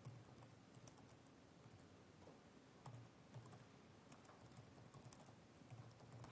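Faint typing on a computer keyboard: scattered soft key clicks over near silence.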